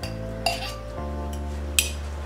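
A metal spoon clinking twice against a glass pizza-sauce jar as sauce is scooped out, over background music.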